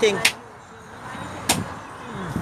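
A voice trailing off, then low steady background noise with a single sharp click about a second and a half in.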